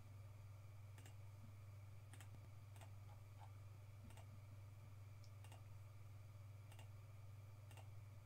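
Faint computer mouse clicks, about six single clicks spaced roughly a second apart, over a steady low electrical hum.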